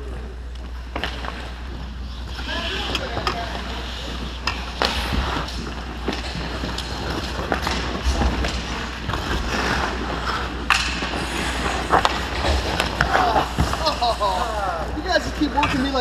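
Ice hockey play at an indoor rink: skates scraping and carving on the ice, with repeated sharp clacks of sticks and puck. Players call out partway through and again near the end, over a steady low hum.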